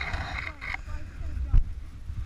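A sled carrying several children sliding down a snowy hill: a steady low rumble of the ride and wind buffeting the camera's microphone, with a sharp jolt about one and a half seconds in. A child's long high squeal runs through the first part.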